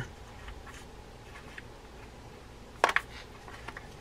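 Quiet room tone with a short, sharp double click about three seconds in: a small hard part being picked up off the workbench.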